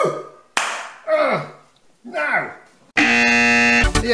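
A man's short vocal exclamations that fall in pitch, with a sharp click about half a second in. Then, about three seconds in, a loud steady buzzer tone sounds for under a second and cuts off suddenly.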